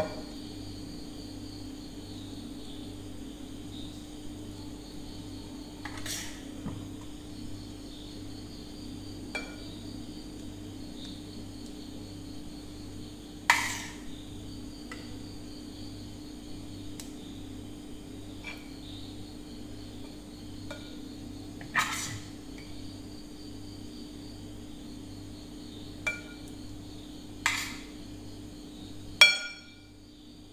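A metal spoon clinks against a steel pot and a glass dish while chocolate pudding mix is scooped and spread: about seven sharp taps spread through, the loudest about halfway and just before the end.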